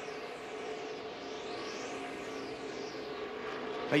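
Stock-car V8 engines of a NASCAR Xfinity field running flat out around the track, a steady engine drone. A phasing whoosh rises and falls in the middle as the cars sweep past the trackside microphone.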